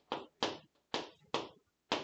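Chalk on a chalkboard, writing: five short, sharp strokes, about two a second, each starting suddenly and fading quickly.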